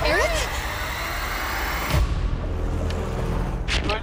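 A woman's voice calls a name once at the start, then a dense, low rumbling wash of trailer music and sound design; its high hiss falls away sharply about halfway through, and a short whoosh comes just before the end.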